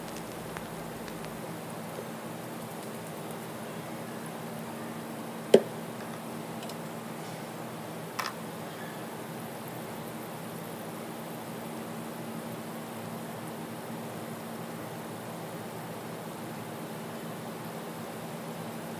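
French fries sizzling steadily as they deep-fry in a small pan of hot oil, with two sharp pops, a loud one about five seconds in and a smaller one a few seconds later.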